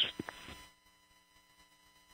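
A radio call on the launch-control voice loop cuts off in the first half second, followed by a faint, steady hum and static on the line.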